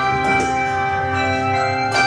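Handbell choir playing: many bronze handbells ringing together in sustained chords, with a new chord struck just after the start and another near the end.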